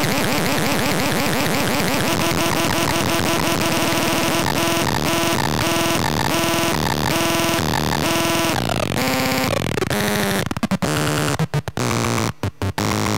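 Circuit-bent VTech Little Smart Tiny Touch Phone giving out a harsh, noisy electronic drone whose tones step in a choppy repeating pattern as its knobs are turned. From about ten seconds in, the sound starts cutting in and out in a rapid stutter.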